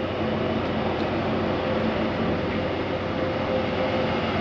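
Steady mechanical drone with a faint hum from a ferry, heard on its open deck: the ship's engines and ventilation running.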